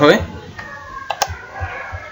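A few sharp clicks from a computer keyboard and mouse, the clearest a little over a second in.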